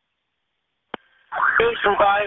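Dead silence, then a single sharp click about a second in as a police two-way radio transmission keys up. After a brief faint tone, a voice starts speaking over the radio, sounding thin and narrow.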